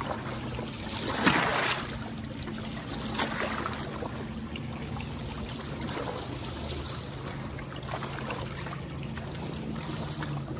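Lake water lapping and splashing against shoreline rocks, with a louder splash about a second in and smaller ones after. A faint steady low hum runs underneath.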